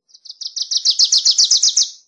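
Wilson's warbler singing one rapid song of about fifteen short, high, down-slurred chip notes, about eight a second. The song grows louder as it goes and lasts nearly two seconds.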